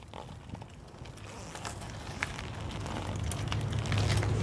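Wind buffeting the camera microphone with a low rumble that grows louder, over scattered crackles and clicks from a mountain bike rolling across dry leaves and grit on concrete.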